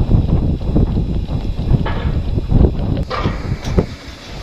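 Wind buffeting the camcorder's microphone in irregular low rumbles, with a few sharp knocks about three seconds in.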